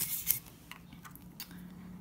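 Quiet scratching of a felt-tip marker on a paper disc spinning on a fidget spinner, dying away within the first half second, followed by a few faint ticks.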